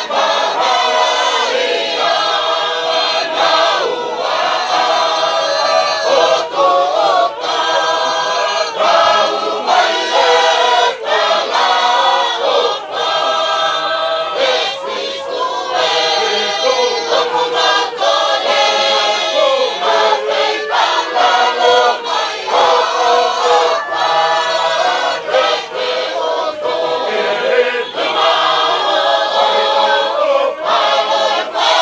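A choir singing, several voices together in harmony with long held notes.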